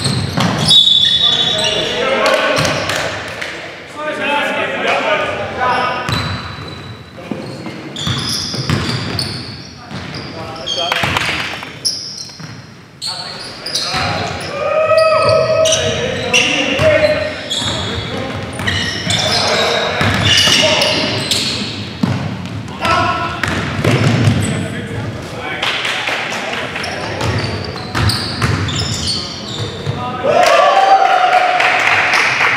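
Live men's basketball game in a gym: the ball bouncing on the hardwood court amid players' shouts and calls, echoing in the hall.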